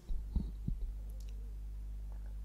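A pause in speech: a steady low electrical hum, with two or three soft low thumps in the first second.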